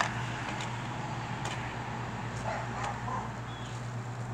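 A few light clicks of small camping gear being handled over a steady low hum, with a dog barking faintly a couple of times around the middle.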